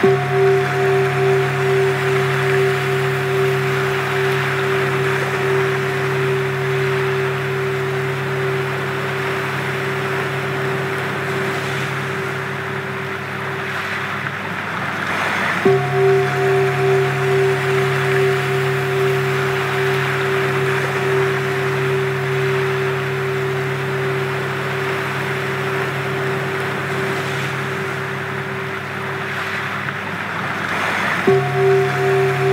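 Sound-healing frequency track: steady pure tones layered over a constant rushing noise like water. There is a low hum, a stronger middle tone that pulses at first and then holds, and a faint higher tone. The tones break off and start over about halfway through.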